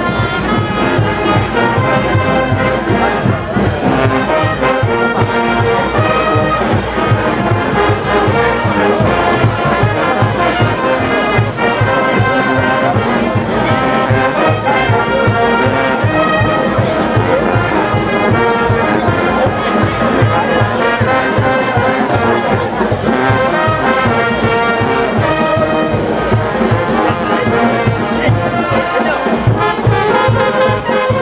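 Brass band music, with trumpets and trombones playing over a steady low beat.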